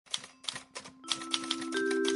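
Podcast intro music: typewriter-style key clicks, three spaced out and then a quicker run, over held notes that enter one by one and build into a chord.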